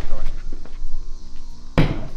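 A door pushed open, with one loud thump about two seconds in, over a low steady music drone.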